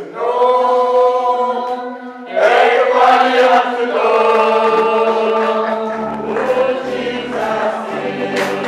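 Church congregation singing a gospel song in long held notes, with a man's voice leading at the microphone and a short break between phrases about two seconds in.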